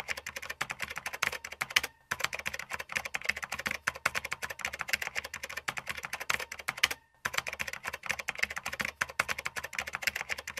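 Keyboard-typing sound effect: a fast, continuous run of key clicks many times a second, with two short breaks, about two seconds and about seven seconds in. It accompanies text being typed out letter by letter.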